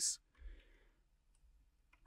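A few faint computer mouse and keyboard clicks on a quiet room background. The most noticeable is about half a second in, and a tiny click comes near the middle.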